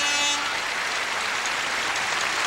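Steady wash of arena crowd applause. A long held note of the program music sounds under it and stops about half a second in.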